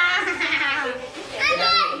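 Children talking in lively, high-pitched voices, with a short pause a little after a second in before the talking picks up again.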